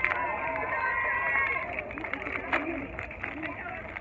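Background chatter of several voices over a steady hum of outdoor noise, with a sharp click about two and a half seconds in.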